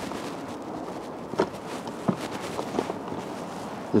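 Jump-starter clamps and leads being lifted out of their carry case: a few light clicks and rustles over a steady outdoor hiss.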